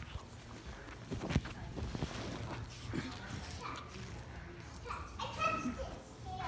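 A small dog scuffling about on a fabric couch in rough play, with a sharp thump a little over a second in and a short pitched sound about five seconds in.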